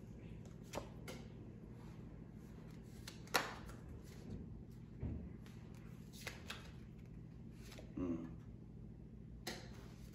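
A deck of tarot cards being shuffled by hand, giving a few soft, scattered card clicks, the loudest about three seconds in, over a low steady hum.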